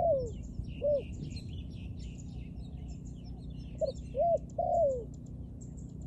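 Spotted dove cooing. The tail of one phrase and a short coo come near the start, then a full three-note phrase about four seconds in ends with a long falling note. Faint high chirps of small birds sound throughout.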